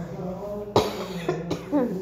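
A person coughing: one loud, sharp cough just under a second in, followed by a couple of smaller coughs or throat sounds.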